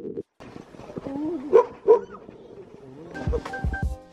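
Background music starting about three seconds in, with deep bass beats and held notes. Before it comes a short wavering, yelp-like cry with two sharp peaks.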